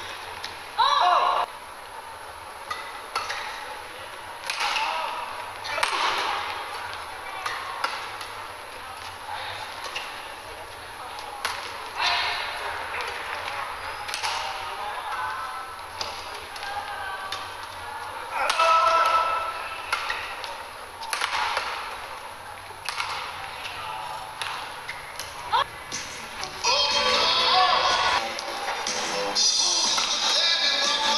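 Badminton rallies: repeated sharp racket strikes on the shuttlecock and short squeaks of players' shoes on the court mat. Near the end a louder, noisier spell with voices comes in.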